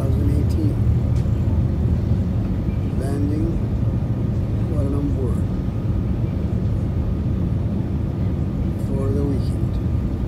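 Steady low rumble of a jet airliner's cabin near the engine during the descent to land: engine and airflow noise. Faint voices come through a few times over it.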